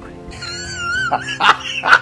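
A comedic editing sound effect over music: a warbling, wavering high tone starts shortly after the beginning, with a few sharp hits in the second half.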